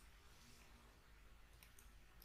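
Near silence: room tone, with a few very faint computer mouse clicks about one and a half seconds in.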